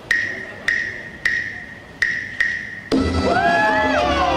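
Claves tapping five sharp wooden clicks in a three-then-two pattern, the son clave rhythm that opens a salsa track. Just before the end the full salsa band comes in with horns and bass.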